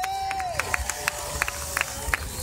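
Scattered applause from the spectators, with a handful of separate claps close by, under a long drawn-out call over the PA that slides down in pitch and then holds.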